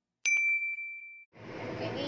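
A notification-bell 'ding' sound effect from a subscribe-button animation: one bright chime struck once, ringing for about a second as it fades. About a second and a half in, a steady noisy background starts.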